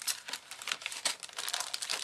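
Retail packs of clear stamps and journal cards in plastic sleeves crinkling and rustling as they are picked up and shuffled together by hand, an irregular run of small crackles.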